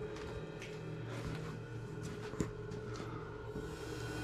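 Faint footsteps and small knocks on a floor littered with rubble and loose boards, a few scattered ticks with one sharper tap about two and a half seconds in, over a low steady hum.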